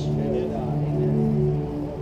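A worship band holds a soft, steady chord of several sustained notes.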